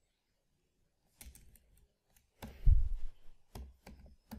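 Computer keyboard keystrokes: after about a second of quiet, a few scattered key clicks. The loudest, about two and a half seconds in, has a heavy thud.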